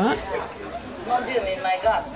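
Speech only: a quieter voice talking faintly beneath a pause in the louder dubbed voice-over.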